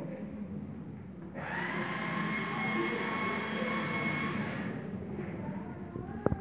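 Live industrial noise music: a steady hissing noise drone with a few held high tones swells in about a second and a half in and fades out near the end, over a low hum.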